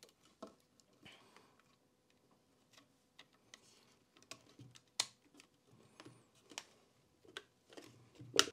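Near silence broken by a few faint, sharp clicks and light taps from hands pressing a self-adhesive LED strip into its channels on a wooden frame, the sharpest about five seconds in.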